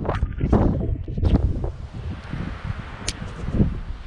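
A fingertip rubbing across the camera lens to clear fog from it: a few close scrubbing swipes in the first second and a half. Then a low wind rumble on the microphone, with one sharp click about three seconds in.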